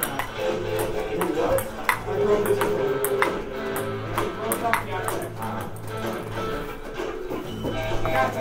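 A table tennis rally: a ping-pong ball clicks sharply off paddles and the laminate classroom desks used as a table, about once a second, over background music.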